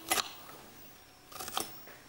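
A few light clicks and taps of kitchen utensils at work on a counter: one sharp click just after the start, then a few fainter ones about one and a half seconds in.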